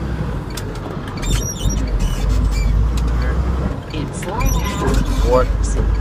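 Cab noise of a six-speed manual straight truck under way: the engine's steady low rumble, with two short rising whines near the end.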